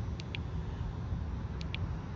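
Steady low rumble of outdoor background noise, with a few faint, short high ticks.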